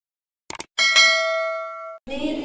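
Subscribe-button animation sound effect: two quick clicks, then a notification bell ding that rings and slowly fades before being cut off suddenly.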